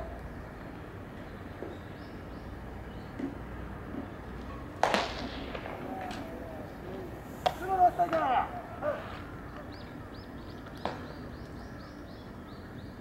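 A sharp crack of a bat meeting a pitched baseball, followed a few seconds later by players' shouts and short pops of the ball being caught.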